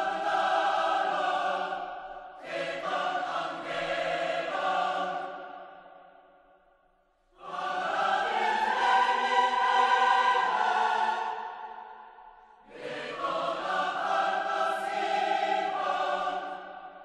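Choral music: sustained chords of many voices in long phrases, each swelling and fading over several seconds, with short breaks between them, one near the start and a longer one about halfway.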